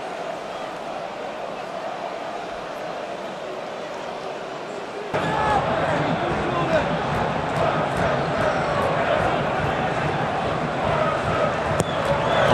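Football stadium crowd noise: a steady wash of many voices that steps up louder about five seconds in, with scattered shouts and chanting voices rising out of it.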